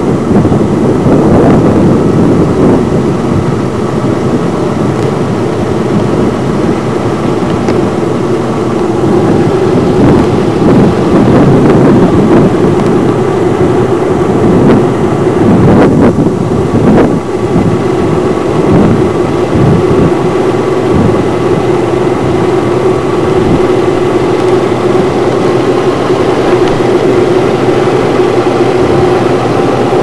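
A moving vehicle's engine and road noise, a loud steady drone that holds an even hum, briefly fluttering about halfway through.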